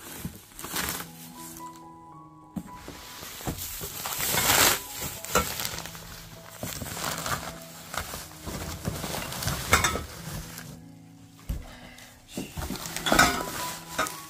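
Plastic bubble wrap and cardboard rustling and crinkling, with occasional knocks, as a wrapped metal towel-warmer frame is worked out of its box. Background music with held notes plays underneath.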